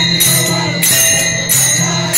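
Brass hand cymbals (taal) struck in a steady beat, about three clashes roughly two-thirds of a second apart, each ringing on, over a low steady hum, as devotional bhajan music.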